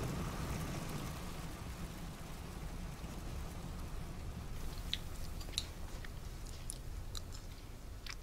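A person tasting a dessert from a small spoon, with faint mouth and spoon clicks over a low, steady background rumble.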